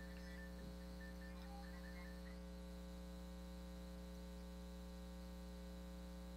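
Faint, steady electrical mains hum with a stack of evenly spaced overtones, unchanging throughout.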